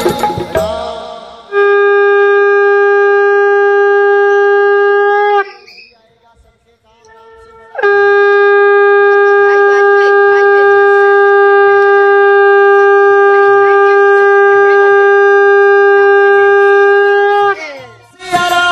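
A conch shell (shankh) blown in two long blasts at one steady pitch: the first lasts about four seconds and the second, after a short pause, about ten. Each blast sags slightly in pitch as it ends.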